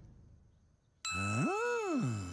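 A cartoon 'ding' sound effect: a bell-like tone starts suddenly about halfway through and holds steady. A pitched sound glides up and back down with it.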